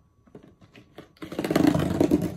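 A cardboard shipping box being torn open by hand: a few faint handling clicks, then a loud ripping noise starting a little over a second in.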